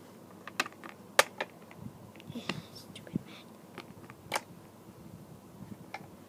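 Handling noise from hands moving small toys right at the microphone. About half a dozen irregular sharp clicks and taps come with soft rustling between them, and the loudest click falls a little over a second in.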